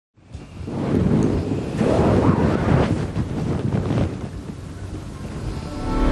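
Soundtrack swell of low, rumbling noise without clear notes, fading in over the first second and then rising and falling.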